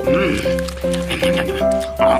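Background music: a melody of held, stepping notes, with a brief rising-and-falling swoop sound effect just after the start.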